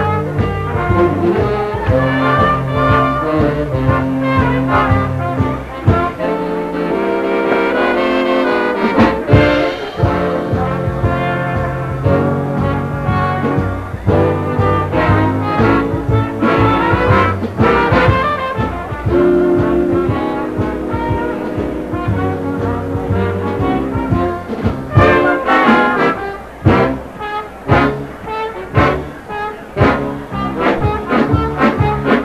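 Big-band dance orchestra playing, with the brass section to the fore, from a live radio broadcast recording. It ends in a run of short, punchy accents near the end.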